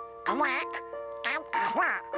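A squawky, quacking Disney cartoon duck voice talking in three short, unintelligible bursts over an orchestral cartoon score of held notes.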